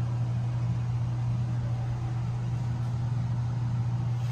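A steady low mechanical hum, unchanging throughout.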